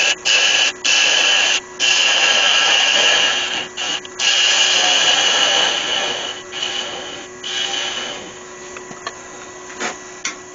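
Wood-turning tool cutting a spinning wooden blank held in a chuck on a Galaxy DVR lathe, shaping it to a point: a hiss of shavings in long strokes broken by brief lifts of the tool, growing lighter after about six seconds. A faint steady hum runs underneath.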